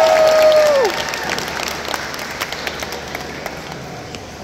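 Audience applauding, with a few long held cheers at different pitches that glide down and stop about a second in. The clapping then thins out and fades.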